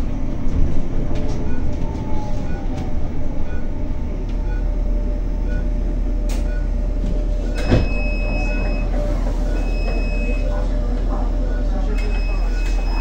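Cabin of a 2023 Zhongtong N12 battery-electric city bus on the move: a steady low rumble, a faint falling motor whine and soft regular ticks. Past halfway there is a clunk, then three long high electronic beeps as the bus stops at a door.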